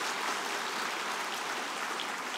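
Audience applauding: the steady clapping of many hands.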